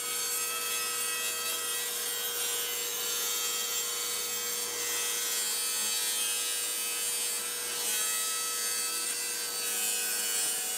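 Festool compact table saw running and cutting through a wooden piece, making an angled cut at 20 degrees. A steady motor whine sits under the continuous hiss of the blade in the wood.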